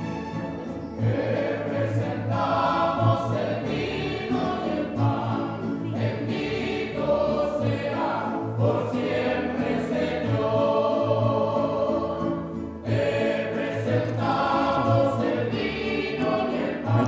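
Live church music: a group of singers performing a hymn with guitars, a bass line pulsing steadily underneath the voices.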